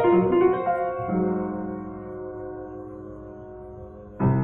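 Kawai upright piano played solo in a blues: several chords struck in the first second, then a chord struck about a second in that is left to ring and slowly fade for nearly three seconds.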